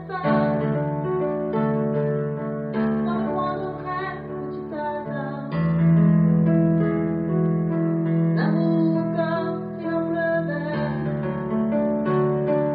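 Piano playing a slow instrumental passage, held chords changing about every two and a half seconds.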